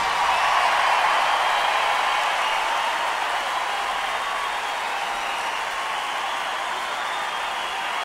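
Applause from a large arena crowd at the end of a song, slowly dying down.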